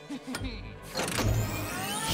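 Cartoon sound effect of a ray machine powering up: a low rumble begins about half a second in, a hit lands about a second in, then rising whines climb in pitch. Background music plays under it.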